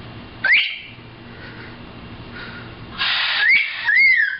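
Macaw giving a short, sharp rising whistle about half a second in. Near the end it makes a raspy screech that runs into more whistled glides, one rising and then falling.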